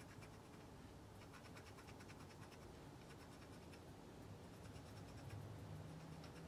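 Faint, rapid scratching of a fan brush's bristles sweeping highlighter across the skin.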